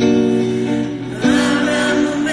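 Live band playing a slow song: guitar over sustained chords, with the chord changing about a second in.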